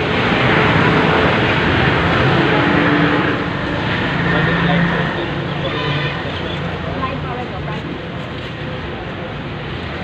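Outdoor noise: a steady rushing sound, loudest for the first three seconds and then easing off, with faint voices of people around.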